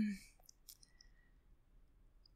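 A woman's word trails off into a pause at a close microphone. A few faint mouth clicks follow, about half a second to a second in, over near silence.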